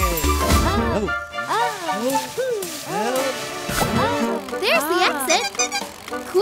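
Cartoon soundtrack: music with a string of quick swooping noises that rise and fall in pitch, like wordless cartoon voices, several a second. Deep bass notes stop about a second in.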